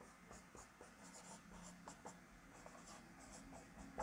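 Marker pen writing on a whiteboard: a series of faint, short strokes as letters are drawn, with a sharper tap at the very end.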